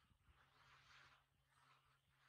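Near silence: faint soft rustles, about one a second, over a low steady hum.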